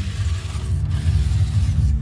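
Toy remote-control monster truck running across concrete, a rattly mechanical whirr of its small motor and plastic gears.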